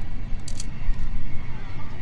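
Outdoor stadium ambience in a pause between spoken words: a steady low rumble with faint crowd voices and a couple of short clicks.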